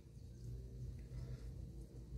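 Quiet room tone: a faint, steady low hum with no distinct sound on top.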